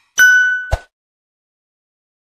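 A notification-bell 'ding' sound effect rings once, bright and fading over about half a second, with a short low thump near its end.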